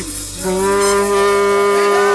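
A female gospel singer holds a long, steady sung "oh" on one note with a slight vibrato, entering about half a second in after a short break for breath.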